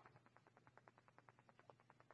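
Near silence: room tone with a faint, rapid ticking, roughly ten ticks a second.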